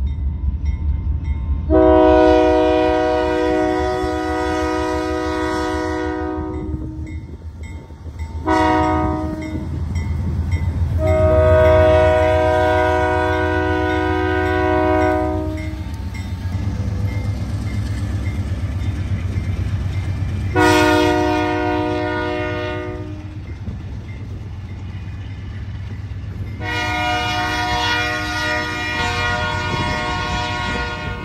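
Albany & Eastern diesel locomotive sounding its multi-chime air horn for a road crossing: a long blast, a short one, a long one, then two more blasts near the end. Under it the diesel engine runs with a steady low rumble as the locomotive and its freight cars roll past.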